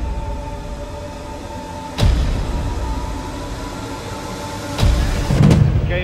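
Background music of held, sustained tones with sudden deep booming hits, one about two seconds in and another near five seconds.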